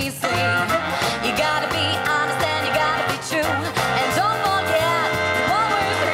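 A live ska-jazz band playing: a woman singing over saxophones, trumpet, drums, guitar and keyboard, with the bass and drums keeping a steady beat about twice a second.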